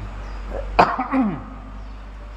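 A man coughs once, sharply, about three quarters of a second in, followed by a brief falling vocal sound.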